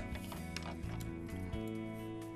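Soft background music of sustained, steady tones, with a few faint light clicks from paper and pencil being handled on a table.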